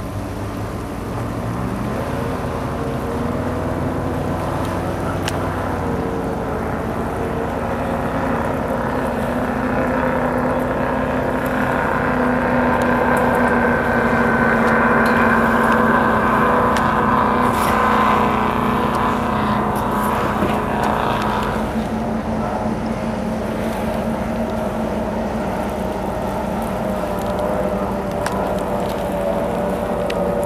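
Offshore powerboat engines running at high speed past the shore, growing louder to a peak around the middle and then easing off as the boat moves away.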